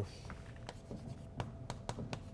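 Chalk tapping and scratching against a blackboard in a few short, sharp strokes, starting under a second in.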